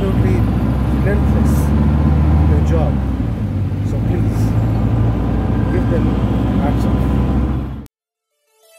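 Car engine and road noise heard from inside the cabin of a moving car, a steady low rumble with short bits of voice over it. It cuts off abruptly near the end.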